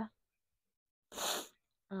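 One short, sharp breathy hiss from a person, about half a second long, a little past the middle of a silent pause.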